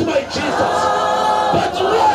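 A large crowd of people singing a song together in unison, holding long notes, with a brief break between phrases about one and a half seconds in.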